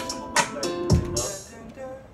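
A hip-hop beat in progress playing back: heavy kick drums about half a second apart, with hi-hat-like hits over a steady pitched melody. It eases off near the end.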